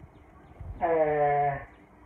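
A man's single drawn-out hesitation sound, "er", held at a steady pitch for under a second, about halfway through.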